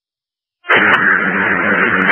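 Two-way fire radio keying up: dead silence, then about two-thirds of a second in, a steady rush of radio static and open-mic noise at the start of a transmission, before any words.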